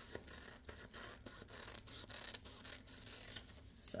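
Paper scissors cutting along a line on a printed paper pattern: a faint, irregular run of snips with paper rustle, about three cuts a second.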